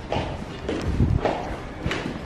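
Footsteps on a hard tiled floor, several irregular steps, with a sharp click near the end.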